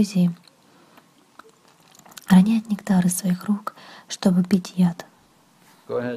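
A person's voice speaking in two short phrases with a pause between them.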